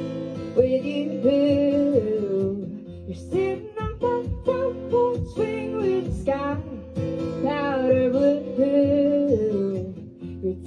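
A woman singing a folk song with held notes, accompanied by acoustic guitar.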